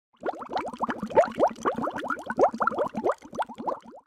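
Bubbling-water sound effect: a rapid string of rising plops, about seven a second, that cuts off suddenly at the end.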